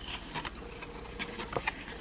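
Cardstock being folded and creased by hand: scattered soft crackles and small clicks of stiff paper, a few sharper ones a little past the middle.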